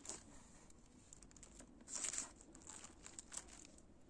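A knife cutting through a loaf of soft bread rolls on its wrapper, giving faint crinkling and tearing rustles, loudest about two seconds in.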